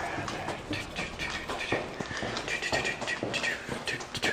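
Footsteps walking on a hard floor at an ordinary pace, about two to three steps a second, with some camera-handling rustle.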